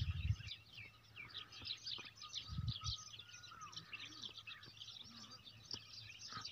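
A chorus of small birds chirping densely and continuously, with two low thumps, one right at the start and another about two and a half seconds in.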